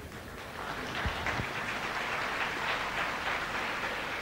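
Audience clapping, swelling up within the first second and then continuing steadily, with a couple of low thumps about a second in.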